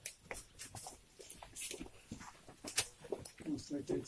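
Faint talking from people close by, with scattered light clicks and scuffs.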